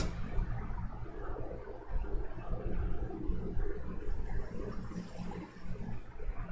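Low, steady rumble with a faint hiss: background noise in a small room, with no voice over it.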